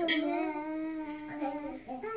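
A child's voice singing a long, drawn-out note that wavers and drifts slightly down in pitch, breaking off briefly near the end.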